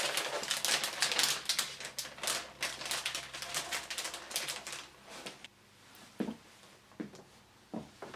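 Anti-static plastic bag crinkling and rustling as a computer motherboard is slid out of it: dense crackling for about five seconds, then a few separate light taps.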